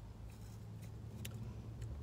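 Low steady hum inside a car, with a few faint clicks.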